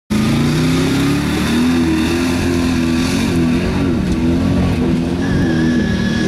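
Pickup truck engine revving hard and unevenly as the truck churns through deep mud, its pitch rising and dipping as the throttle is worked, with mud and water spraying from the wheels.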